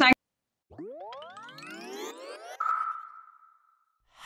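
Short electronic logo sting: several tones glide upward together in a rising sweep for about two seconds, ending in a bright held tone that fades out.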